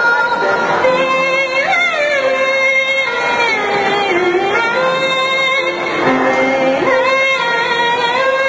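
A woman sings a Hakka mountain song (客家山歌) in Chinese over instrumental accompaniment. She holds long notes and slides between pitches.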